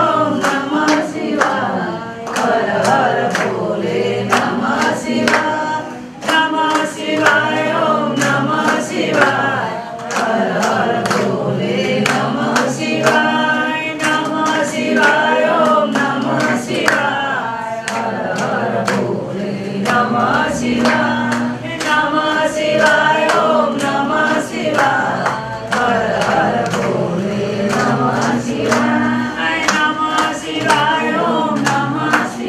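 A group of people singing together, with steady rhythmic hand clapping keeping time.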